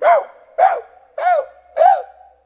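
A man imitating a small dog barking: four short yaps about half a second apart, each rising and then falling in pitch, mimicking a dog that keeps yapping all night.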